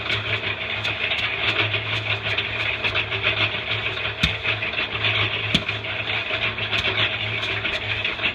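An engine or motor running steadily, its low hum pulsing with a faint regular ticking about three to four times a second. Two sharp knocks come a little past the middle.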